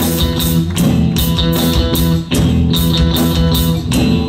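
Live band playing a steady rock groove: strummed electric guitar chords over bass and drum kit, with a short break in the sound a little past the middle.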